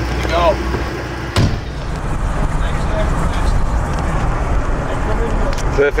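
Steady low rumble of a motorhome driving, its engine and road noise heard from inside the cab, with a sharp click about a second and a half in.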